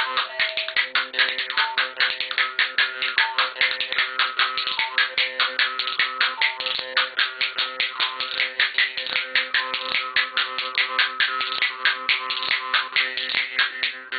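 Rajasthani jaw harp (morchang) played in a fast twanging rhythm: a steady drone with a melody of shifting overtones above it. Over it, a pair of spoons clatters in quick rhythmic clicks.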